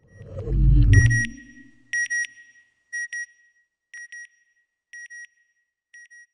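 Closing sound effect: a deep whoosh that falls in pitch, then pairs of short electronic beeps, one pair about every second, each fainter than the one before.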